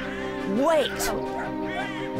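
Cartoon lynx cub's voiced cry: a short yelp that rises and falls in pitch about half a second in, and a shorter call near the end, over background music with held chords.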